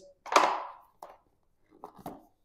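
White packaging insert scraping against the inside of a cardboard box as it is lifted out: one short rustling scrape about half a second in, followed by a few faint taps as it is set down on the desk.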